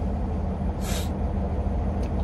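Peterbilt 389 semi-truck's diesel engine idling steadily while it warms up, heard from inside the cab. A short hiss of air from the truck's air system comes about a second in.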